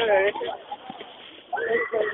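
People's voices making short, high-pitched wordless cries: one at the start and a rising-and-falling squeal near the end.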